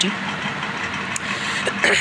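Steady background rumble and hiss, with a faint click about a second in.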